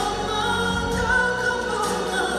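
Male ballad singer singing live into a handheld microphone over an amplified backing track, holding long notes with a slight waver.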